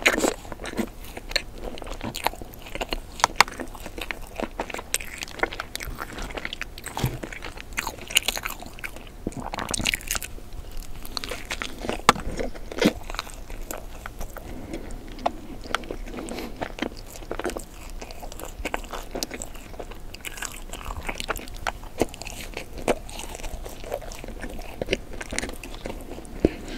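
Close-miked bites and chewing of a pink-glazed, sprinkle-topped doughnut, with soft crunches and many small sharp mouth clicks and crackles, several bites in succession.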